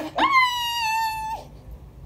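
A young woman's high-pitched shriek: one long held cry of just over a second that jumps up in pitch at the start, sags a little, then breaks off.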